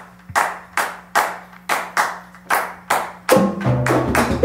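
Hand claps counting in the tempo, about two and a half a second. About three seconds in, the Latin jazz band comes in on the beat with timbales, bar chimes and low pitched notes.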